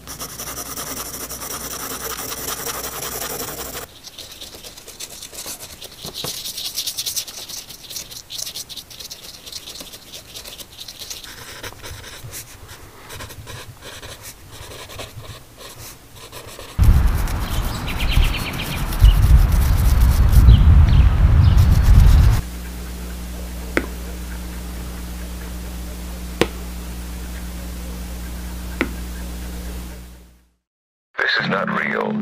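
Pencil and pen scratching on paper through the first half. Then a loud low rumble for about five seconds, and a steady low hum with a few sharp clicks near the end.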